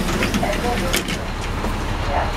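NABI 416 transit bus engine idling at a stop, a steady low rumble, with voices and street noise coming in through the open front door.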